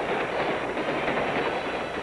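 Steam locomotive running: a steady rushing noise of wheels and steam.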